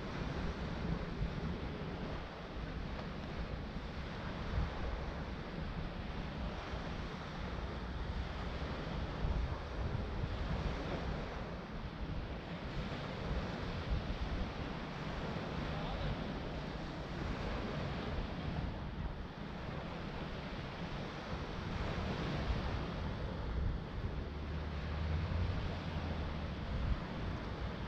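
Small waves washing onto a sandy shore in a steady surf, with wind buffeting the microphone in a low rumble.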